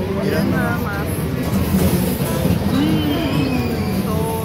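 Outdoor carnival din: voices and background music over a steady low hum.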